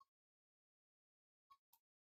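Near silence, with three faint short clicks: one at the start and two close together about a second and a half in.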